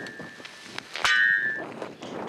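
Metal shovel blade striking a frozen lump of hamburger patties to break them apart: a sharp, ringing clang about a second in, after the fading ring of a blow just before.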